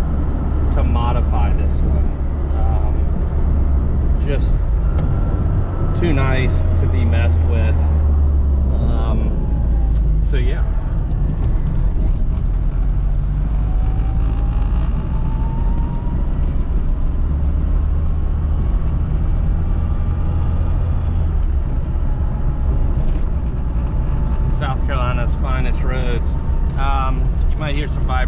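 Classic Mini's engine and road noise heard from inside the cabin while driving: a steady low drone, with a faint whine rising in pitch around the middle as the car picks up speed.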